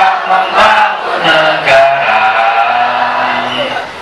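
A large mixed group of young men and women singing together in unison, holding long sustained notes of a university anthem with short breaks between phrases.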